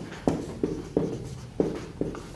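A marker writing on a whiteboard: a quick run of short strokes and taps, about five in two seconds, as a line of text is written.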